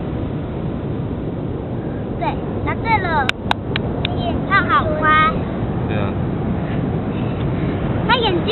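High-pitched voices chattering and exclaiming in short bursts over a steady low outdoor rumble, with two sharp clicks close together about three and a half seconds in.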